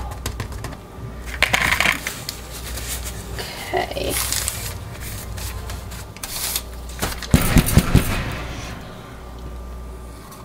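Clatter of plastic soap-making tools and containers being handled: a silicone spatula scraping and tapping, with scattered clicks and a quick run of four sharp knocks near the end.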